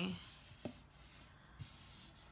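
Paper cards being slid and laid down on a tabletop: faint rubbing of paper, with a soft tap a little over half a second in.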